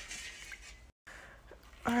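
Faint swishing of salt water stirred by hand in a stainless steel bowl, cut by a brief dead-silent gap about a second in.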